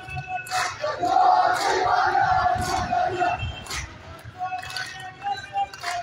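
A crowd of men chanting together in unison, with sharp beats about once a second marking the rhythm of the chant.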